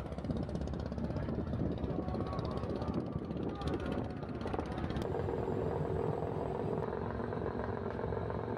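Wind rumbling steadily on the microphone on the open deck of a river launch, over a low engine drone. About five seconds in, a steady mid-pitched hum joins.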